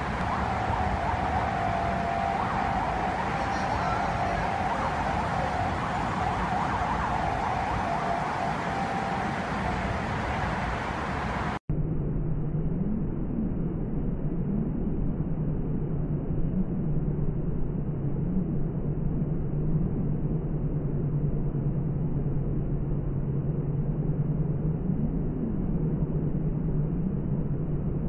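City street traffic noise with a faint wavering tone like a distant siren. About halfway through it cuts abruptly to a duller, muffled street recording with a low hum that rises and falls in pitch now and then.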